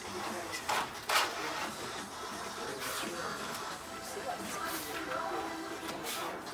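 Faint murmur of voices in a large training hall. About a second in come two brief, sharp noises, the second louder, from the competitor's movements as the sword form begins.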